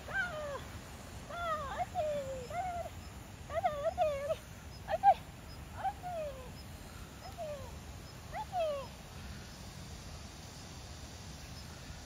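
A dog giving a string of short, high yips and whines, singly or in pairs about a second apart, that stop about three seconds before the end.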